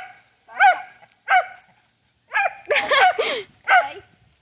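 A dog barking in short, high-pitched barks, about seven of them, coming faster in the second half: excited barking while it waits for a thrown toy.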